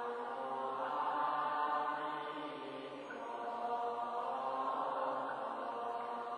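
Slow Buddhist chanting with long held notes, swelling and easing in two phrases of about three seconds each.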